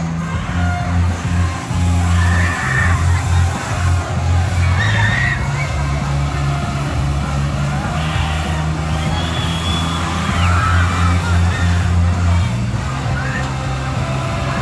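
Flying-carpet amusement ride running through its cycle: a low machine hum that swells and drops in steps as the platform swings, with riders' distant shouts above it.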